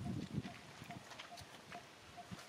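Scattered light clicks and rustles from macaques moving and handling food on dry, leaf-littered ground, with a faint short high note repeating about twice a second.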